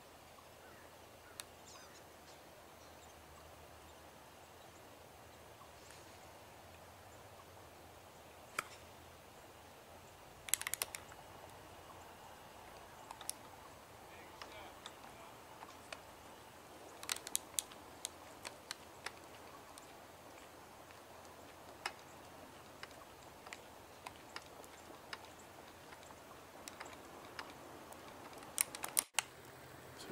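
Faint outdoor background broken by scattered sharp clicks and taps, with a cluster about ten seconds in and another about seventeen seconds in, typical of a handheld camera being handled and zoomed.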